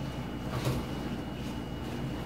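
Faint rustling of a large plastic gift bag as it is handled and set down on a wooden table, with one brief louder crinkle about two-thirds of a second in.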